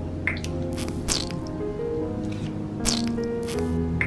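Several short, wet squelching sounds of thick acrylic paint being squeezed out in dollops, some sliding down or up in pitch, over background music.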